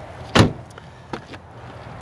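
A Jeep Wrangler door shutting with one solid thud about half a second in, followed a little later by a lighter latch click.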